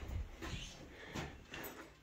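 Faint handling sounds with a few light knocks.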